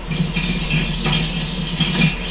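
Television soundtrack playing in a room during a stretch without dialogue, over a steady low hum.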